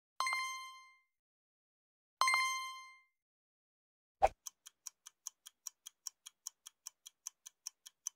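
Editing sound effects: two bright chime dings about two seconds apart, each ringing out for under a second. About four seconds in comes a short low thud, then fast clock-like ticking at about five ticks a second.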